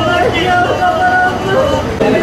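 Several people's voices talking indistinctly over a steady low rumble.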